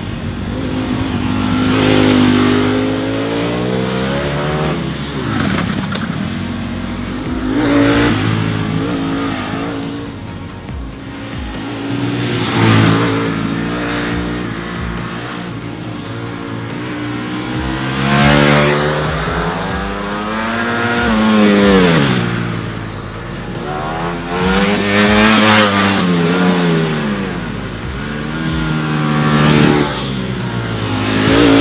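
Ducati Panigale V4 sport bike's V4 engine revving hard through the bends, its pitch climbing under throttle and dropping off again several times, with a loud peak each time the bike passes close.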